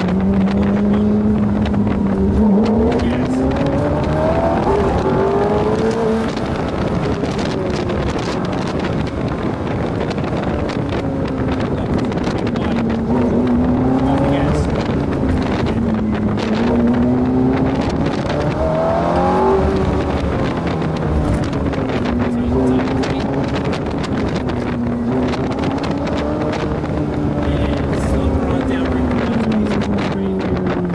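Ferrari F430's V8 engine revving up and dropping back again and again as the car accelerates and slows, its pitch climbing and falling several times.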